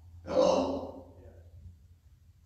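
A man sighing once, a short breathy exhale that peaks just after the start and fades within about a second, over a steady low hum.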